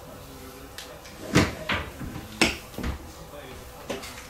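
Four sharp knocks between about one and three seconds in, over faint low voices in a small room.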